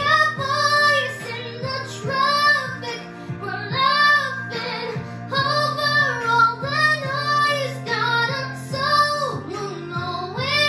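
A girl singing a slow pop ballad in sustained, wavering phrases over a backing track of steady held low notes.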